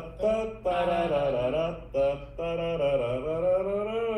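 A man chanting a drawn-out, sing-song ladder-game tune in wordless syllables, each note held for half a second to a second or more, with short breaks between phrases.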